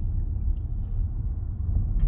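Steady low rumble of a car driving slowly, heard from inside the cabin: engine and tyre noise on the road.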